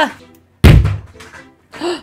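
A single loud, deep thud about half a second in, fading quickly, as a banana appears on the table. A brief high-pitched cartoon-style voice sounds near the end.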